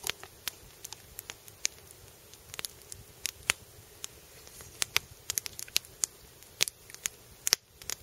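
Wood campfire crackling, with irregular sharp pops and snaps.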